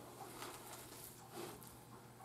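Faint, soft squishing of bare hands kneading a moist bread stuffing mixture in a bowl, over a low steady hum.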